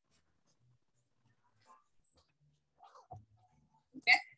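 Near silence: faint room tone on a video call, with a few brief faint noises about three seconds in.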